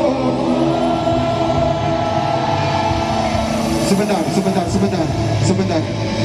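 Live pop-rock band through a concert PA, with a long note held for about three and a half seconds, then shorter voice-like sounds.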